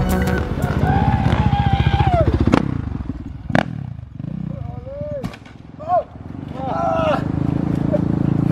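Dirt bike engine running, its pitch falling over the first couple of seconds. Then come a few sharp knocks, with voices calling out over the bike's steady idle.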